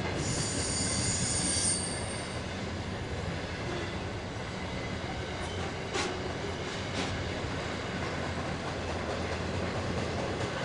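Container wagons of a long intermodal freight train rolling past on a curve: a steady rumble of wheels on rail, with high-pitched wheel squeal in about the first two seconds and two sharp clacks about six and seven seconds in.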